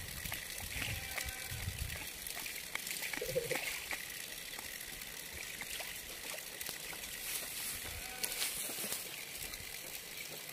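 Water trickling and splashing at a steady, moderate level, with a low rumble during the first two seconds and faint voices now and then.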